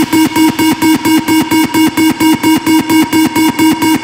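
Electronic trance music: one synth chord chopped into rapid, even pulses with no kick drum, a build-up. At the very end it breaks into the full beat.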